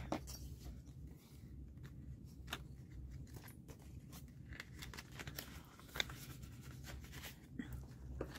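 Faint rustling and crinkling of paper dollar bills being handled and slipped into a clear plastic sleeve in a ring binder, with scattered light clicks and one sharper click about six seconds in.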